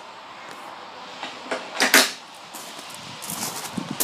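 A single sharp knock about two seconds in, with a couple of small clicks before it and a few faint knocks near the end.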